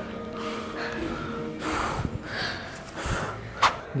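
People catching their breath after running: a few heavy breaths and gasps over faint music.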